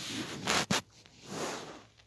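Handling noise from the phone being moved and adjusted: fabric and fingers rubbing and scraping close to its microphone in two bursts, with a sharp click between them.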